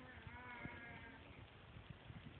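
Small dog making a faint, wavering whine-grumble, one drawn-out 'talking' call of about a second: the dog's protest while the cat beside it is petted.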